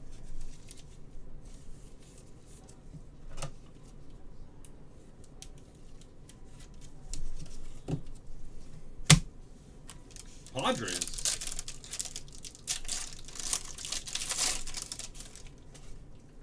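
Crinkling and tearing of plastic card wrapping as trading cards are unpacked by hand. A few sharp clicks come first, the loudest about nine seconds in, and a busy spell of crinkling follows near the end.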